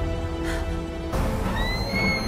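Orchestral film score holding a sustained chord, which shifts with a rush of sound about a second in. Near the end a young woman's long, high-pitched scream begins as she falls.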